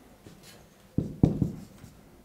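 Marker writing on a whiteboard: after a quiet second, a quick run of three sharp taps and strokes as symbols go onto the board.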